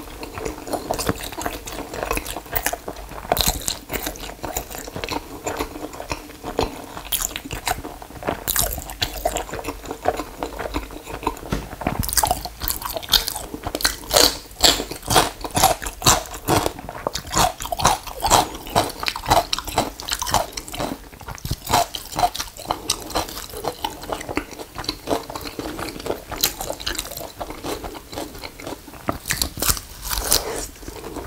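Close-miked chewing of a mouthful of steamed mandu dumplings: a steady stream of wet, sticky mouth sounds and lip smacks, busiest in the middle.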